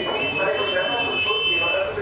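A steady high-pitched signal tone sounds for nearly two seconds and stops just before the end, over people talking.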